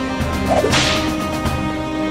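A single swish sound effect about three quarters of a second in, fading quickly, over steady background music.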